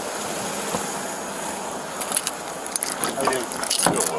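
Steady outdoor hiss on a body-worn camera microphone, with scattered clicks and rustling over the last two seconds and a few faint words near the end.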